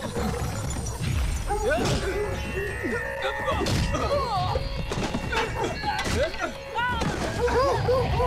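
Film soundtrack of a chaotic scuffle: music under shouting and cries, with a few sharp thuds and crashes. Near the end, dogs start barking rapidly, several barks a second.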